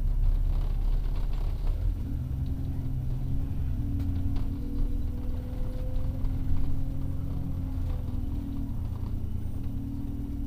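An Alexander Dennis Enviro400 double-decker bus on the move, heard from inside. Its engine and drivetrain give a heavy low rumble with a steady drone over it.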